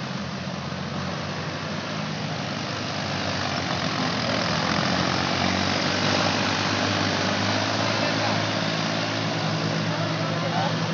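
Diesel tractor engines running under load as they pull tillage implements through wet paddy mud for puddling. The nearest engine, a red Massey Ferguson's, grows louder over the first half as it passes close, then holds steady.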